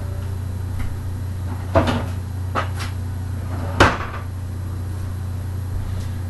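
Kitchen things being handled out of view: two sharp knocks about two and four seconds in, the second the louder, with lighter clicks between them, over a steady low hum.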